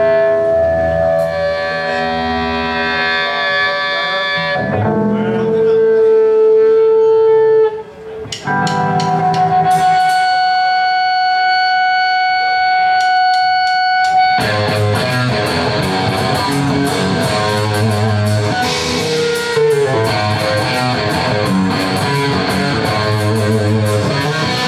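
Live punk-rock band: electric guitar playing held, ringing chords and notes, with a short break about eight seconds in. The full band with drums comes in about fourteen seconds in.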